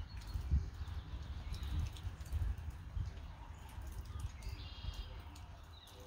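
Faint, short bird calls in the background, clearest about four and a half seconds in, over a low rumble and soft, irregular thumps.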